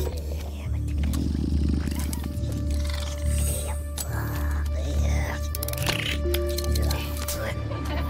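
Film sound design for a small metallic robot transforming and scuttling: rapid mechanical clicks, clanks and whirring glides with garbled, growling robotic chatter, over a low drone and orchestral score.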